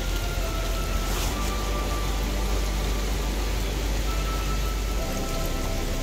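Waterfall, water spilling and splashing steadily down a rock chute, with faint held notes of background music over it.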